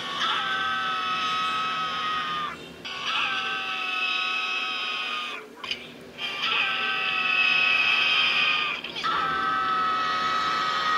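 Two cartoon voices screaming in terror together, one higher and one lower. There are four long held screams with short breaks for breath between them.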